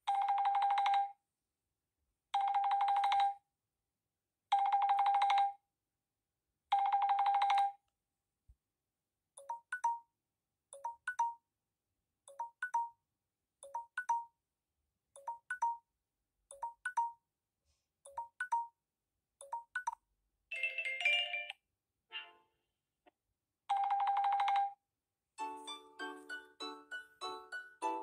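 Samsung Galaxy S8 Active timer alert tones previewed one after another through the phone's speaker. First come four long electronic beeps about two seconds apart, then a run of short double chirps about every second and a half. After a brief jingle and one more long beep, a new melody starts near the end.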